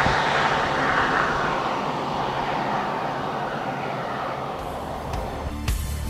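Road traffic: a motor vehicle passing close by, then fading and dropping in pitch as it moves away. Music comes in near the end.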